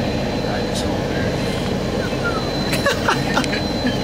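Steady engine and ventilation rumble inside a coach bus cabin, with a thin high whine coming in about three seconds in. Faint passenger voices come through near the end.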